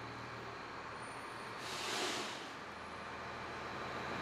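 Faint background noise with a low steady hum; a soft hiss swells and fades about two seconds in.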